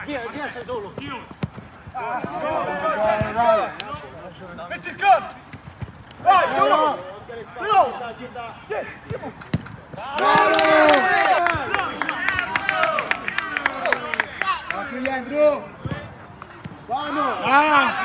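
Football players shouting to each other during play, with sharp thuds of the ball being kicked. A longer burst of loud shouting comes about ten seconds in.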